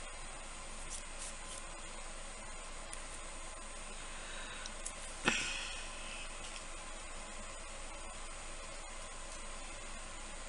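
Steady low hiss of background noise, with a few faint taps and one sharper click about five seconds in, as a plastic squeeze bottle of UV resin is picked up and handled over a silicone mold.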